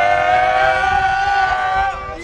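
Several voices holding long notes that slide slowly up and down together, loud and ending abruptly.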